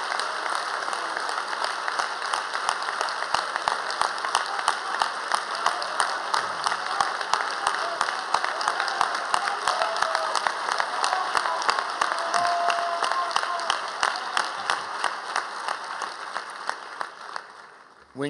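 A large audience applauding in a sustained ovation, the clapping dying away near the end.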